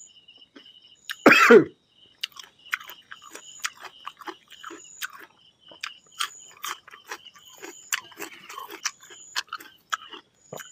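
A man coughs once, loudly, about a second in, then eats by hand, chewing rice and fried fish with many short wet mouth clicks and smacks.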